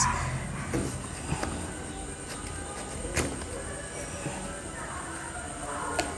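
Soft handling sounds of soil being pressed around a plant cutting in a plastic hanging pot, with one light click about three seconds in.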